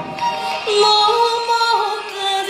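A woman singing a Burmese song solo. About two-thirds of a second in she scoops up into a long held note.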